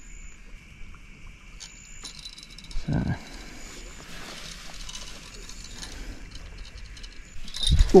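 Light clicks and ticks of a spinning rod and reel being handled while the line is felt for bites, over faint steady high tones. Near the end comes a sudden loud rustle and knock as the rod is struck at a bite.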